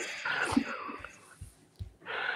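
Quiet, hushed voices: whispered or murmured speech with brief broken fragments.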